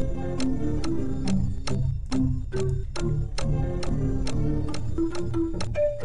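Background music with a steady clicking beat, about two to three clicks a second, under short pitched melody notes and a low bass.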